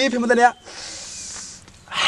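A man speaks briefly, then there is a soft, breathy hiss for about a second. Near the end a louder breathy burst follows, like a man starting to laugh.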